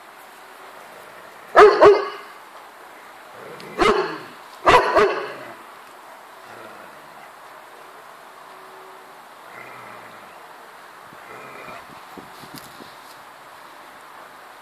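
Dog barking: about five loud barks in three quick bursts, two, then one, then two, in the first five seconds.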